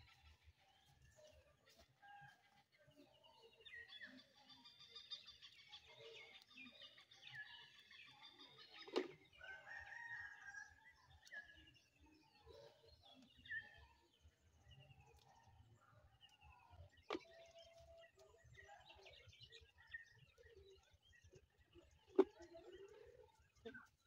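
Faint calls of chickens and small birds, with a longer call about four to six seconds in, and two sharp clicks partway through.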